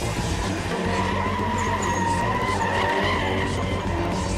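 Car tyres squealing steadily as two cars drift sideways in tandem, with their engines running underneath.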